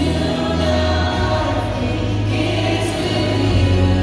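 Choir and worship singers singing a contemporary worship song together with a live band, over steady sustained low bass notes.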